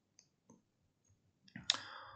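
A single sharp computer mouse click about one and a half seconds in, advancing the slide, with a short fainter tail after it; the rest is near silence.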